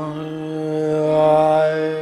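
Indian classical singing in raga Bihag: a voice holds one long steady note over a continuous drone, swelling in the middle.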